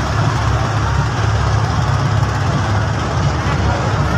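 Motorboat engine running steadily with a deep, even hum, under a haze of water and wind noise.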